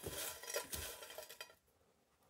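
A hand stirring through folded paper slips in a stainless steel bowl: the paper rustles and scrapes against the metal with small clicks. It stops about one and a half seconds in.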